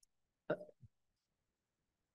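A brief, short vocal noise from a person, about half a second in, with a tiny low sound just after it; otherwise near silence.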